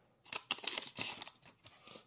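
Faint handling noise of Yu-Gi-Oh trading cards and their opened foil booster-pack wrapper: a cluster of short crinkles and rustles starting about a third of a second in, then a few light ticks as the cards are shuffled.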